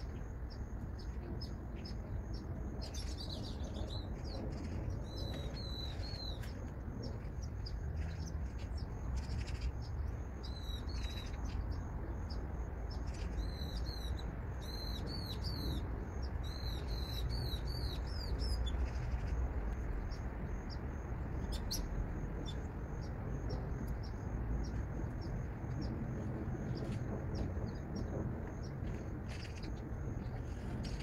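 A songbird singing outdoors: several bursts of quick, repeated high notes through the first two-thirds, then only scattered single chirps. A steady low rumble runs underneath throughout.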